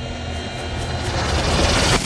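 Jet aircraft engine noise with a deep rumble, growing steadily louder and then cut off suddenly at the end.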